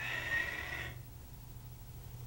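A karateka's forceful, audible breath during the Goju-ryu Tensho breathing kata, about a second long near the start, with a hissing edge.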